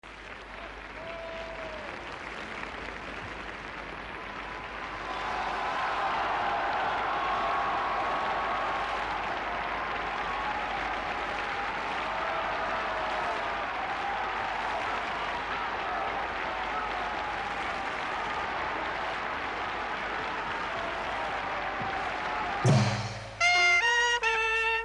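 A steady noisy wash with a faint wavering melody in it runs under the title cards. Near the end a trumpet and a clarinet strike up loudly together, in short phrases.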